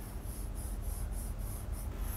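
Faint scratching of a stylus on an interactive whiteboard screen, a run of short, even strokes about three or four a second as a zigzag resistor symbol is drawn.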